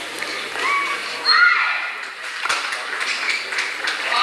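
Badminton rally: sharp clicks of rackets hitting the shuttlecock, with badminton shoes squeaking on the court mat, loudest a little over a second in.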